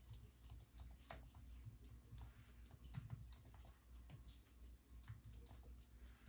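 Faint, irregular key clicks of typing on an Apple Magic Keyboard with numeric pad.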